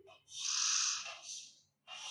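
Chalk scraping across a blackboard as straight lines are drawn: one long stroke of about a second, then a short pause and another stroke starting near the end.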